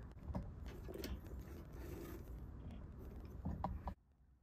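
Faint handling noises: a few light clicks and scrapes over a low steady hum, with a short louder sound near the end.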